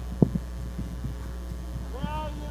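Steady low electrical hum, with one sharp knock about a quarter second in and a few softer knocks after it.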